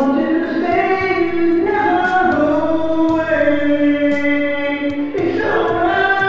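Karaoke singing: a solo voice holding long, sustained sung notes over a recorded music backing track, with a short break in the line about five seconds in.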